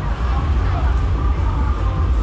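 Busy street ambience: indistinct voices of people nearby over a heavy, steady low rumble.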